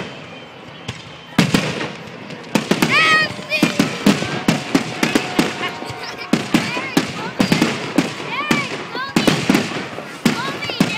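Aerial fireworks shells bursting in rapid succession: after a quieter first second, a dense run of sharp bangs and crackles follows, several a second.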